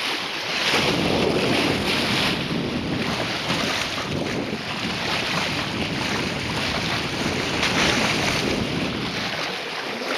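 Sea water rushing and splashing along the hull of a sailing yacht under way, with wind noise on the microphone.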